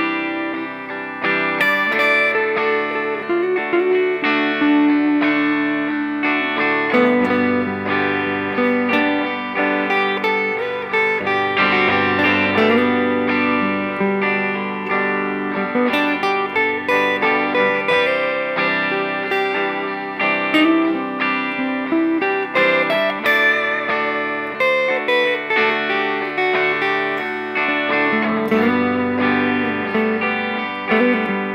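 Electric guitar improvising a simple lead over a backing jam track, staying on the notes of each major chord's triad and sliding up into the third.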